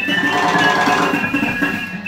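Live free-improvised music from a small acoustic group of saxophone, double bass and drums, a loose, unmetred texture of sustained high tones and scattered struck notes.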